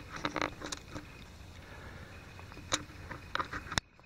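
Handling noise from a compact camera being worked to zoom in: irregular small clicks and brief rustles. A sharp click comes just before the end, after which the sound briefly drops out.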